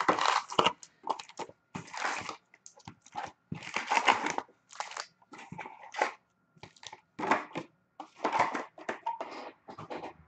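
An Upper Deck hockey card box being torn open by hand and its foil-wrapped packs pulled out and stacked. The result is an irregular run of crinkling and crackling from foil wrappers and cardboard.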